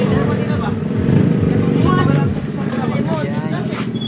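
Small air-cooled motorcycle engine running steadily, with people talking over it.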